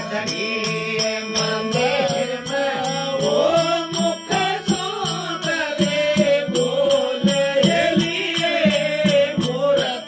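A Rajasthani bhajan: a man sings a devotional melody over a sustained harmonium drone, with a plucked tandura. A regular high-pitched percussive beat runs through it at about three strokes a second.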